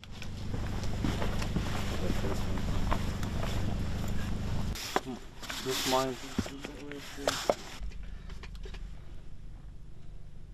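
Footsteps and clothing rustle in a dirt trench over a steady low rumble on the microphone, which cuts off suddenly about five seconds in. After it come a few brief fragments of voices.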